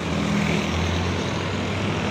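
Harapan Jaya intercity coach passing close by, its diesel engine giving a steady low drone over tyre and road noise, loudest in the middle second.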